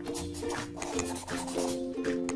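Intro music: sustained chords over a light, regular percussion beat.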